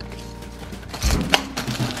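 Crackling and crinkling of plastic bubble-wrap packaging being handled in a gift box, with a cluster of sharp crackles starting about a second in.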